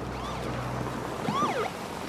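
Police car siren giving two short rising-and-falling whoops, the second one louder, over a low steady hum that fades out about halfway through.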